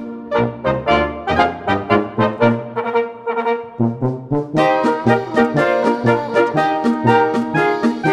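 Brass band playing a polka, with a melody over a steady, evenly pulsing beat. The sound is thinner for the first few seconds, and the full band comes back in about four and a half seconds in.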